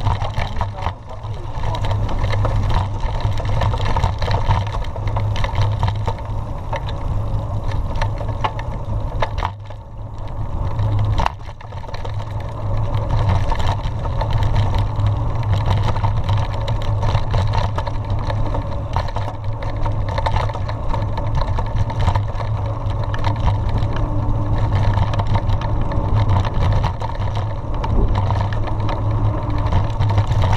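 Steady low rumble of a mountain bike riding downhill on a dirt road, picked up by a handlebar-mounted camera: wind on the microphone and the knobby tyre rolling over the dirt, with frequent rattles and clicks. The rumble dips briefly about ten seconds in.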